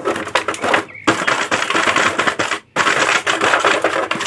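Thin clear plastic blister tray crackling and crinkling as hands grip and press it, with a brief stop about two-thirds of the way through.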